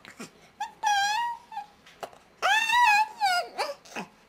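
A baby making long, high-pitched vocal calls, twice, then a few shorter ones near the end.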